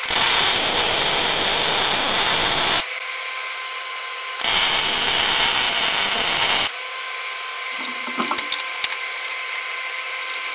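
MIG welder arc crackling and sizzling on a steel bracket in two runs, the first nearly three seconds long and the second about two, with a short pause between. A few light clicks and knocks of handled metal follow near the end.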